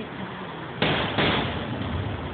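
Two aerial firework shells bursting a little under half a second apart, about a second in. Each is a sudden bang that fades over most of a second, heard through a phone's microphone.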